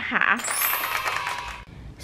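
A short edited-in transition sound effect: many high chiming tones at once with a rising sweep on top, fading out after about a second and a half.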